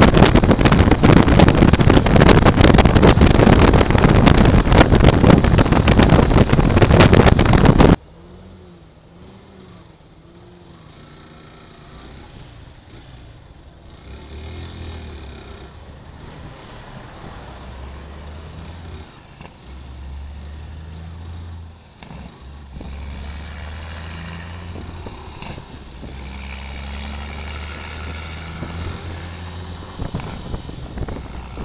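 Loud wind rush on the microphone of a motorcycle travelling at highway speed, cutting off suddenly about eight seconds in. After the cut, a much quieter low engine hum at slow speed, with a few short revs and a slow rise in level near the end as the motorcycle speeds up.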